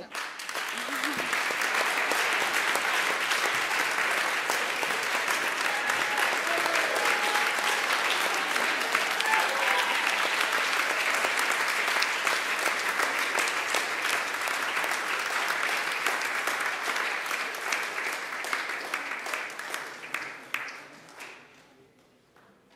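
Audience applauding: steady clapping from a roomful of people, fading away near the end.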